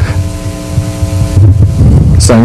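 Low rumble on the talk's sound system, with a steady hum of several tones that stops about one and a half seconds in.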